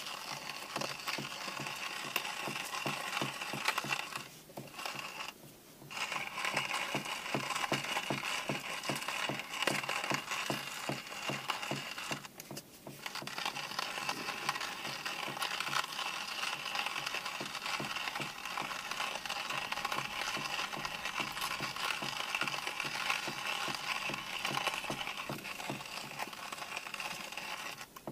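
Hand-crank coffee grinder being turned, crunching beans in a steady rhythm of grinding strokes, with two short pauses in the cranking.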